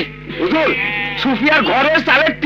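Goats bleating repeatedly in short, wavering calls, over background music and voices.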